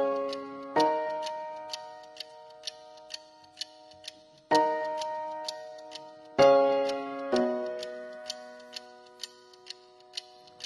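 Instrumental song intro: sparse ringing chords, struck a handful of times and left to fade, over a steady clock-like tick about twice a second.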